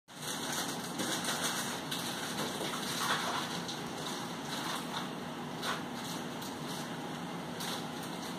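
Steady background noise with a few faint, brief clicks and rustles.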